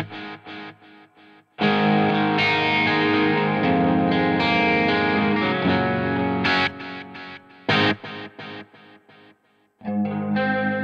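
Electric guitar played through an IK Multimedia ToneX amp-modelling pedal with its delay switched on. Single chord hits are each followed by a train of repeats about a quarter second apart that fade away, with a sustained stretch of playing in the middle.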